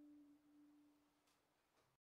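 The last note of a violin and cello duo dying away after the bows leave the strings: a single pure tone fading out within about a second, then near silence with two faint clicks near the end.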